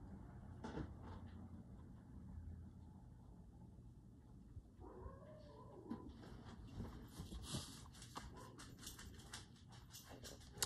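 A faint animal call from outside about five seconds in, then the soft scratching of a fine-tip ink pen drawing strokes on a paper tile.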